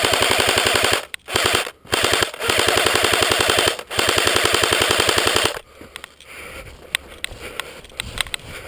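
Airsoft rifle firing several bursts of rapid full-auto fire, about five bursts in a row, then stopping. Quieter scattered clicks and rustle follow near the end.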